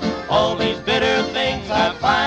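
Country music: a short instrumental fill of separate, sharply struck notes in the break between two sung lines of the song.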